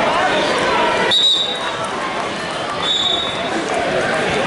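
Many overlapping voices of spectators chattering in a large gym. Two short, high-pitched tones cut through it, one about a second in and a fainter one near three seconds.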